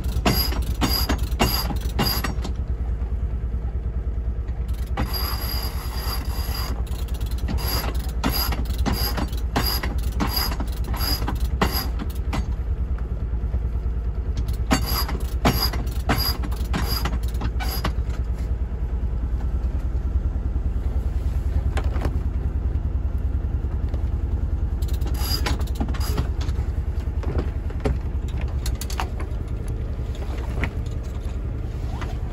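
Reefing lines on a sailing yacht being hauled through by hand, with spells of regular ratchet-like clicking, about two to three clicks a second, from the deck hardware as the line runs. A steady low rumble lies underneath.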